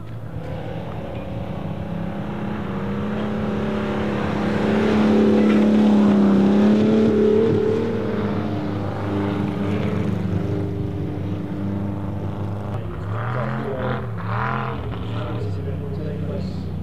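Ferrari 250 Testa Rossa's V12 engine revving as the car powerslides on snow-covered ice. The engine climbs in pitch to its loudest about five to seven seconds in, then eases off, and its note rises and falls quickly a few times near the end.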